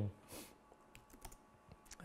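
A few faint taps on a laptop keyboard, spaced irregularly, as the next Bible passage is brought up on screen.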